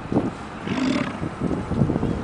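American bison bellowing, a low, rough rumbling from the herd, with a short hiss about a second in.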